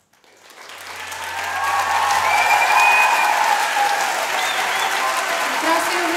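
Audience applauding and cheering at the end of a live song, swelling over the first two seconds and then holding steady.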